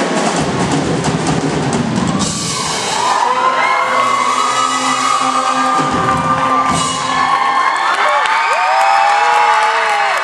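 A school band of three saxophones, bass and drum kit playing: busy drumming with cymbals, then saxophones and bass holding a long chord for about five seconds. Near the end the audience starts cheering and shouting.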